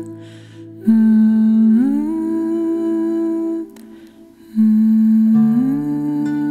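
A lullaby melody hummed by a voice: two long hummed phrases, each sliding up from a lower note to a held higher one, with a short soft breath before each.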